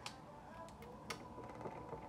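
A few light clicks and taps of tarot cards being handled and laid down on the table, the sharpest at the start and about a second in, over a faint steady hum.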